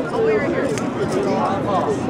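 Spectators' voices at a rugby match: several people talking and calling out over one another with no pause, an unclear babble rather than distinct words.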